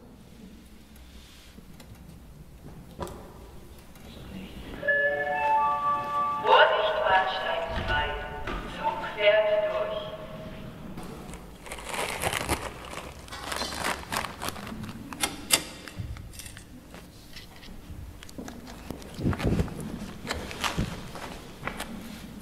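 A short tune of clear, held chime-like notes stepping in pitch, then a run of sharp knocks and clatters.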